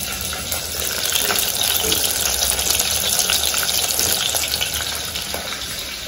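Split lentils (dal) sizzling as they roast in a small hand-held steel pan over a gas flame: a steady hiss with fine scattered crackles.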